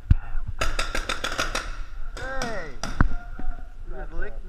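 Paintball markers firing a rapid string of about eight shots in a second, echoing in a hall, with a few single shots around it. A short shout with falling pitch comes after the string.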